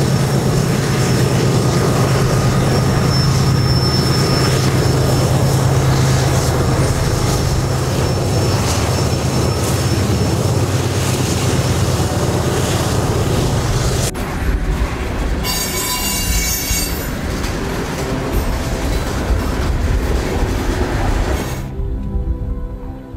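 Canadian Pacific freight train passing: a steady low drone from its diesel locomotives over wheel-and-rail noise, with faint thin wheel squeal at times. About two-thirds of the way through it cuts abruptly to a second freight train, double-stack container cars rolling past with less engine drone and a brief high wheel squeal.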